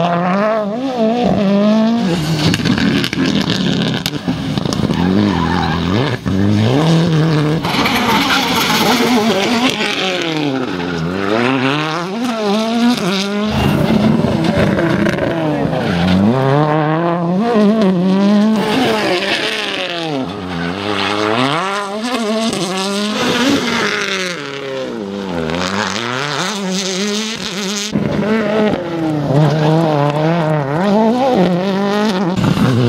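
Ford Fiesta rally cars' 1.6-litre turbocharged engines working a hairpin, one car after another: the pitch drops off as each brakes and changes down, then climbs hard as it accelerates out, over and over.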